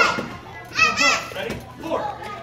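A young child's short, high-pitched shouts, karate kiai given with her punches on the focus mitts: one at the start and two in quick succession just under a second in.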